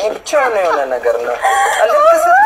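High-pitched, cackling laughter in a run of short falling bursts.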